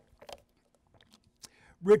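Faint clicks and small mouth sounds picked up by the lectern microphone as the lecturer drinks water, followed near the end by a man starting to speak.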